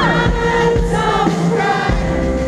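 Live pop-rock band playing, with a male lead singer's voice over drums, bass and electric guitar.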